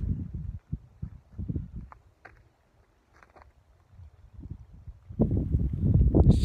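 Wind gusting on the microphone, a low rumble in bursts at first, nearly quiet for a moment, then louder from about five seconds in.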